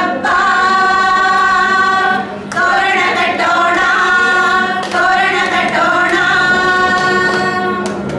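A group of women singing a song together, with long held notes and short breaks between phrases about two and a half and five seconds in.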